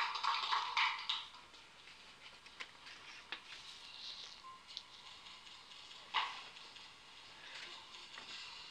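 Spectators applauding a successful lift, fading out within the first second. Then a quiet gym hall with a few faint clicks and one short burst of noise a little after six seconds.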